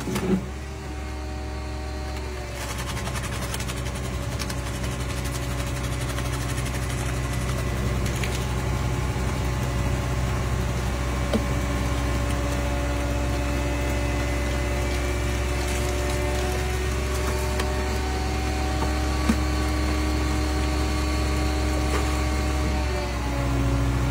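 Hydraulic car crusher running steadily under load as it compacts a car, a constant drone whose tones drift slowly in pitch. There are two brief sharp cracks partway through, and the drone dips and shifts near the end.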